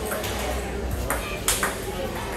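Table tennis rally: the plastic ball is struck by the rubber-faced paddles and bounces on the table, giving a few sharp clicks, the loudest about one and a half seconds in.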